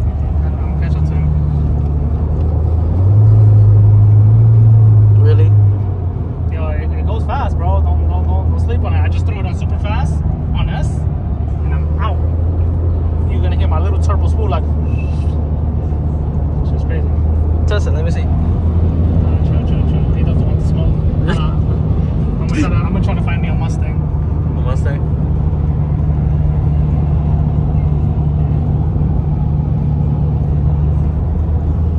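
Steady low drone of road and engine noise inside a Honda's cabin at highway speed, rising to a louder hum for about three seconds a few seconds in.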